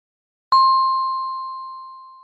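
A single electronic chime: one clear ding about half a second in that fades away slowly. It signals an information pop-up appearing on screen.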